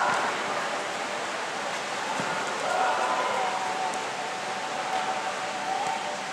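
Steady hiss of a covered football pitch, with players' voices calling out faintly in the distance.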